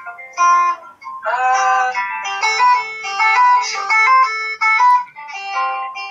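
Acoustic guitar playing with a melody of held, stepping notes sung over it, heard through a laptop's speaker.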